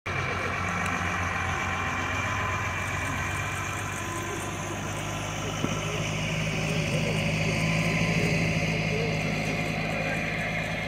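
Tow tractor's engine running steadily as it pulls the jet on a tow bar, growing a little louder as it draws level near the end. Spectators' voices can be heard.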